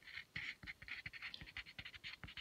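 Colored pencil writing on paper: faint, quick, irregular scratching strokes.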